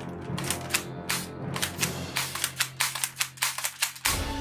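A quick series of sharp plastic clicks and clacks from a toy M16-style rifle's charging handle being worked by hand. The clicks come faster in the second half.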